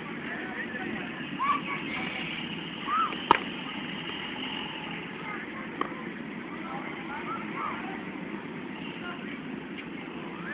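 A cricket bat strikes a ball once, a single sharp crack about three seconds in, over background voices.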